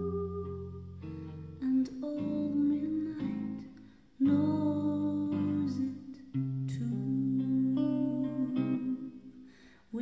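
1939 Gibson ES-150 electric archtop guitar playing slow jazz chords, each chord left to ring and die away before the next, with nearly quiet gaps around four seconds in and near the end. The recording is lo-fi, made with one simple microphone on an old recorder.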